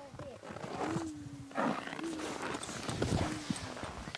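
A voice holding one long, steady low note for about three seconds, over rustling and knocking as someone moves through the canvas tent's door.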